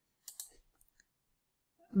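A couple of faint computer mouse clicks about a third of a second in, otherwise near silence.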